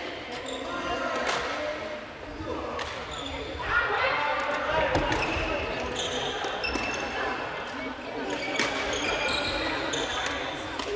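Echoing badminton practice: sharp cracks of rackets hitting shuttlecocks, short high squeaks of court shoes on the wooden floor, and the murmur of players' voices.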